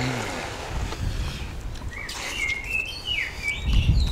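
Birds chirping with short high calls about two seconds in, over a low rumble. Near the end a heavy dull thump as the large frozen ice cream block is set down upright on the wooden table.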